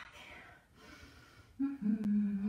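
A woman's faint breathing, then a held, wordless voiced sound from her about a second and a half in, steady in pitch.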